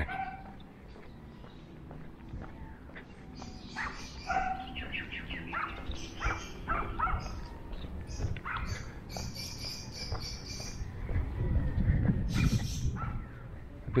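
Birds chirping in short, scattered calls over quiet outdoor ambience, with a low rumble swelling and fading near the end.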